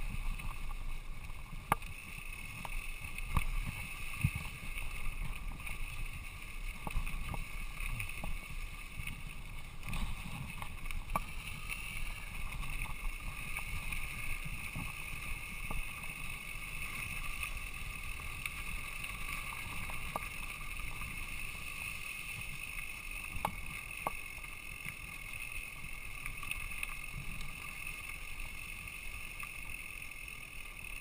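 Mountain bike riding down a dirt singletrack: a steady rumble of tyres over the trail, with scattered sharp clicks and knocks as the bike rattles over bumps.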